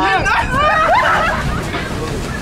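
Several people's voices shouting and calling out over the first second or so, then fading, over a steady low rumble that runs underneath.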